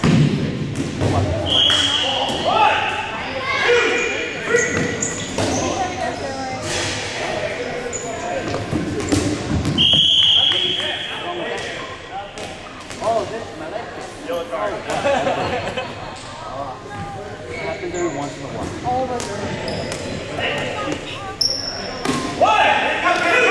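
Dodgeballs bouncing and smacking on a hardwood gym floor and off players, echoing in a large gym, with players shouting. A referee's whistle sounds twice, about two seconds in and again about ten seconds in.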